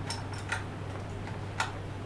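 Three small, sharp metallic clicks from an antique Viennese puzzle lock of the 1800s as a key is worked in it and drawn out: the lock turns but does not open.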